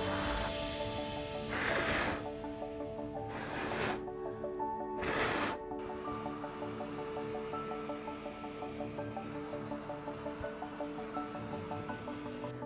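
Four short bursts of air blown hard onto wet acrylic paint, each a hiss of about half a second, roughly one every one and a half seconds, pushing the paint across the canvas. Steady background music plays underneath.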